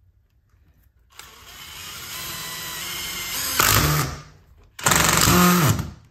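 A cordless DeWalt Xtreme driver drives a self-tapping screw through a steel spring hinge into a metal door frame. The motor starts about a second in and runs steadily as the screw cuts in, then comes two louder, shorter bursts near the end as the screw is driven home.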